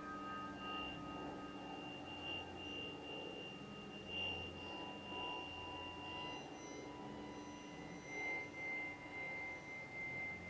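Soft, pure electronic sine tones from a computer, several high steady pitches held and overlapping, with a new tone entering about six seconds in. The ring of a struck piano chord fades out in the first second.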